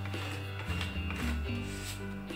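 A plastic card scraped across a metal nail-stamping plate in a few short strokes, over background music.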